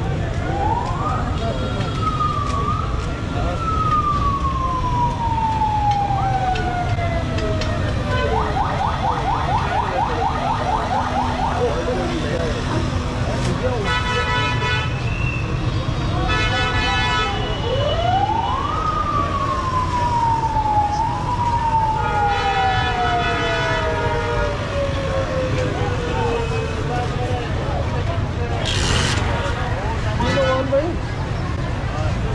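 Ambulance siren wailing in a busy street: two long sweeps, each rising quickly and then falling slowly over about six seconds, one right at the start and one about eighteen seconds in, with a fast warble in between. Short horn blasts sound in the gaps.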